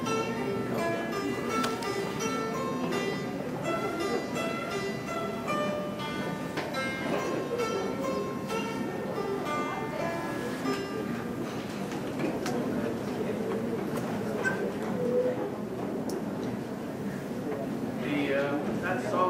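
Dan tranh, the Vietnamese plucked zither, played solo: a steady stream of single plucked notes, each ringing and fading, forming a melody.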